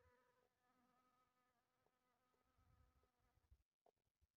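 Very faint buzzing of a bumblebee's wings as it works heather flowers, a steady hum that stops a little before the end.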